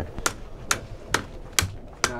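A hand tool chipping through a mud wall to open a murder hole: four sharp strikes, evenly spaced about half a second apart.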